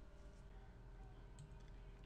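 Near silence: faint room hum with a couple of faint computer mouse clicks.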